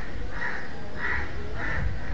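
Crows cawing, a short harsh call about every half second, three to four calls in a row.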